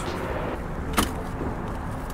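Steady noise of a boat under way, with its motor running. A single sharp click comes about a second in.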